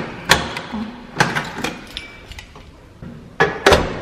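A key turned in a door lock, with several sharp metallic clicks, then the door knob pulled and the locked door knocking against its bolt, the loudest knocks near the end.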